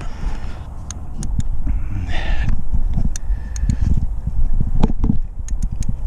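Hand tools being worked onto an oil pressure sensor: irregular light metallic clicks and knocks from a socket, extension and ratchet, over rumbling handling noise on the microphone.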